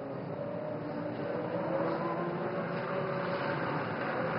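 Distant Formula One V10 engines running steadily over a noisy trackside background, growing slightly louder toward the end.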